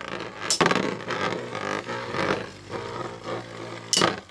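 Two metal-wheeled Beyblade spinning tops spinning against each other on a plastic stadium floor: a steady grating whir full of small ticks, with a sharp clash about half a second in and another just before the end.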